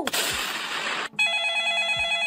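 A burst of hiss that cuts off about a second in, followed by an electronic telephone ringtone: a steady, rapidly trilling tone.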